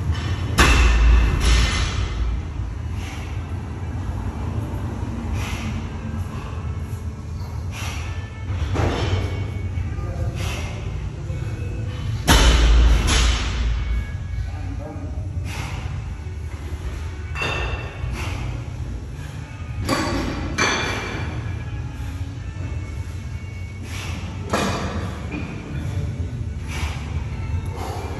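Thick rope pulled hand over hand against a weight-plate stack, with two heavy thuds, about a second in and again about twelve seconds in, and short irregular knocks between them, over background music.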